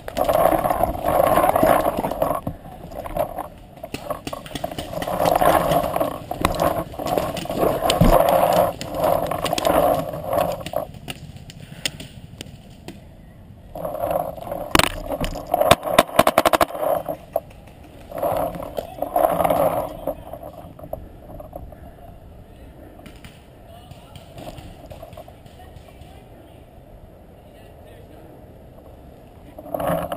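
Paintball players shouting at a distance, in several stretches across the field. A quick cluster of sharp pops sounds about halfway through.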